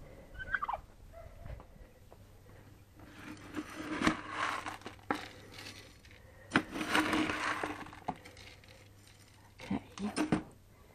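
Plastic scoop dug into a bin of mixed grain feed, the seeds rustling and rattling against the scoop and the bin in two bouts, about three and about six and a half seconds in.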